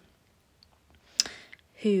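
A short pause in a woman's speech: a single sharp mouth click a little over a second in, followed by a brief breath in, and her voice resuming near the end.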